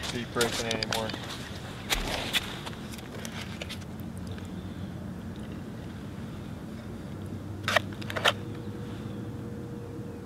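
Brief clicks and knocks from a plastic tip-up being handled and reset over an ice hole: a pair about two seconds in and another pair near the end, over a steady low background hum.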